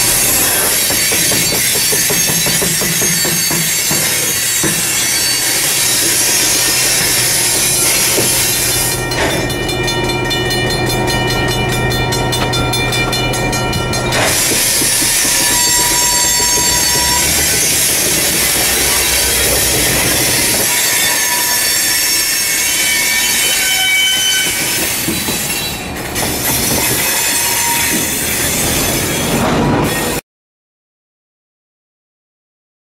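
Freight train of covered hopper cars rolling past an ex-Rock Island EMD GP18 diesel locomotive, its wheels squealing with several steady high tones over the steady rumble of the cars. A low hum sits underneath for the first half.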